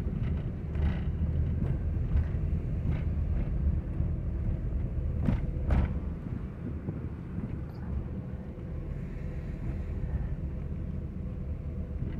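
Car interior noise while driving slowly: a steady low rumble of engine and tyres, heard from inside the cabin. A few light knocks come through, most plainly around five to six seconds in.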